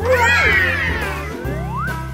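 A cat meowing once, one long call that rises and then falls, followed by a rising sliding tone, over cheerful background music.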